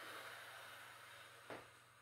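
A woman's faint, long exhale through the mouth as she lifts her hips into a glute bridge, fading away, with a single small click about a second and a half in.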